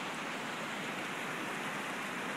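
Steady, even outdoor rushing noise with no distinct events, the sound of an open alpine valley.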